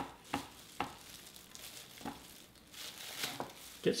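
A plastic spoon pressing and turning a ball of warm mozzarella curd in a glass bowl to squeeze out the whey. There are a few light clicks of the spoon against the glass in the first two seconds, then soft, wet scraping.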